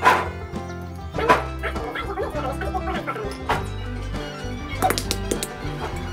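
Background music with a steady melody, over which walnut shells crack sharply by hand four times, at intervals of a second or two.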